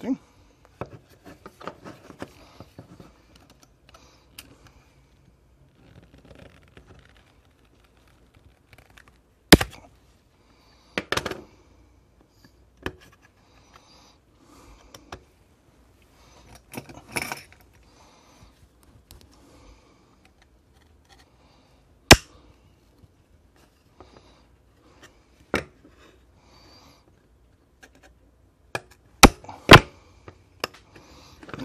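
Plastic casing of a slim power bank handled and pried apart by hand: soft rustling broken by sharp clicks and snaps every few seconds, two in quick succession near the end.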